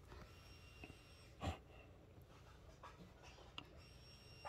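Near silence: faint room tone, with one brief soft noise about a second and a half in.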